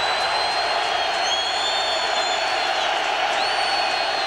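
Football stadium crowd cheering and yelling steadily, a dense wall of noise with thin, shrill, long-held whistle-like tones riding on top, the crowd getting loud for the visiting offense's third down.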